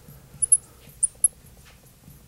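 Marker squeaking on a glass lightboard as numbers are written: four short high squeaks, a close pair about half a second in and two more about a second in.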